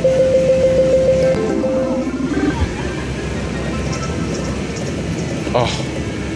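Electronic sounds of a WMS Dragon's Legend video slot machine in a free-spin bonus: a steady pulsing beep for about a second, a short falling run of notes, then continuous casino machine noise and background chatter. A brief exclaimed "oh" comes near the end.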